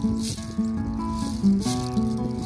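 Acoustic guitar playing held chords between sung lines, with a hand-shaken rattle giving short hissing shakes about once a second.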